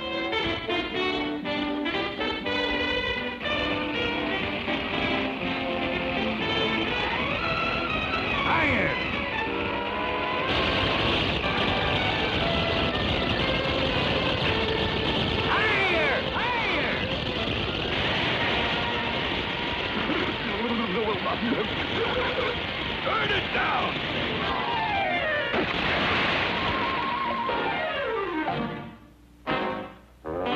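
Cartoon soundtrack: orchestral score with comic sound effects and short gliding vocal cries. A steady noisy rush sits under the music from about ten seconds in until a few seconds before the end.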